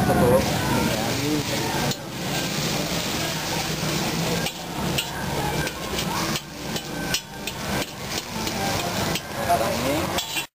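Noodles frying in a hot wok with a steady sizzle, while a spatula stirs and tosses them, scraping and knocking against the wok several times.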